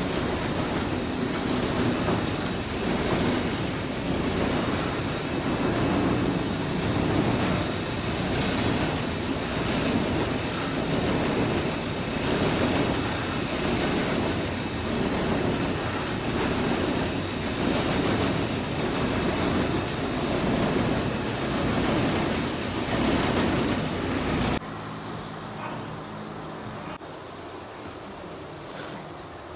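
Cotton carding machine running, making a steady mechanical rattle with a regular pulse as it lays a web of carded cotton onto its winding drum for a quilt batt. The sound cuts off sharply near the end, leaving a quieter low hum.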